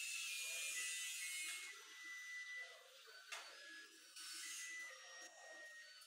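A faint, high-pitched electronic tune of thin beeping notes that step in pitch, with faint murmuring voices underneath and a single click about three seconds in.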